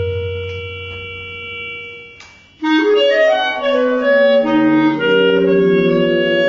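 Clarinet playing: a long held note fades away over the first two seconds or so, then a dense flurry of overlapping notes breaks in suddenly and carries on.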